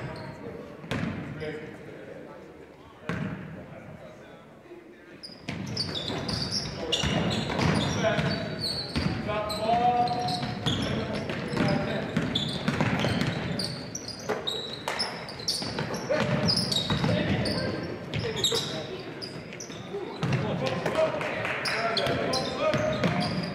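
Basketball game sounds in a gym: a few ball bounces over quiet voices at first. From about five seconds in it grows louder and busier, with dribbling, sneaker squeaks on the hardwood floor and spectators' voices as play runs up the court.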